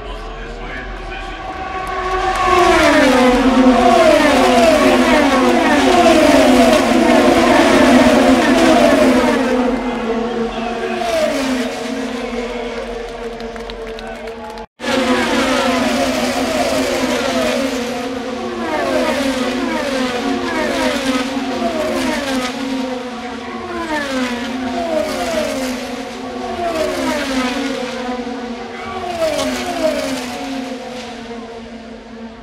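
IndyCar race cars' 2.2-litre twin-turbo V6 engines running flat out past the stands, one car after another, each engine note dropping in pitch as it goes by. The loudest rush of cars comes about two to ten seconds in, the recording cuts briefly about halfway, and more cars keep passing to the end.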